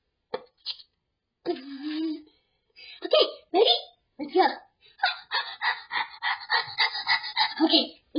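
A young child's voice making short vocal sounds with gaps between them, then a fast run of short bursts over the last three seconds.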